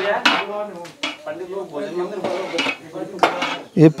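Metal pots and utensils clinking and clattering several times, with voices in the background.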